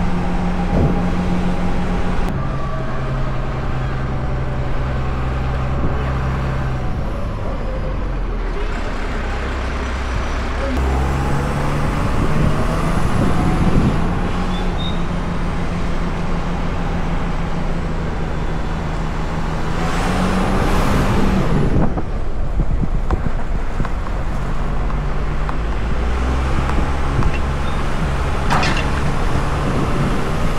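Fire engine's diesel engine running as the truck drives, its pitch stepping up and down a few times with gear changes. Two loud hisses, about two-thirds of the way through and near the end, typical of the air brakes.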